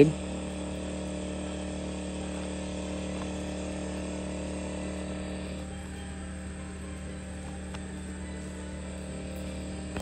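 Steady hum of a portable generator running, with an even hiss above it that eases slightly about halfway through.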